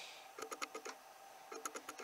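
Faint light clicks of LEGO plastic pieces being handled as the camper van's roof section is lifted off, in two small clusters, about half a second in and near the end.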